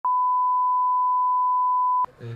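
Broadcast line-up tone played with colour bars: one steady, unwavering beep at a single pitch that starts abruptly and cuts off suddenly.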